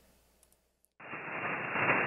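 SSB receiver audio of a FlexRadio 6600 on the 20-metre band, unmuted about a second in: steady band noise and static hiss, cut off above about 3 kHz by the receive filter. It sounds a little grumpy because the band is noisy.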